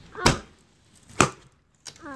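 Motorhome basement compartment door being unlatched and swung open: two sharp clunks about a second apart, then a lighter click near the end.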